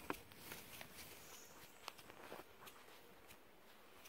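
Near silence, with a few faint scattered clicks and rustles.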